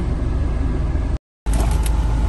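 Steady low rumble of a Kia car idling, heard from inside the cabin, broken by a moment of dead silence just over a second in.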